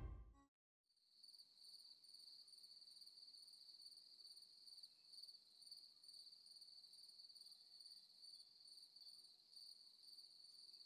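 A music cue fades out in the first half second, then, after a moment of silence, faint steady cricket chirping: a continuous high trill.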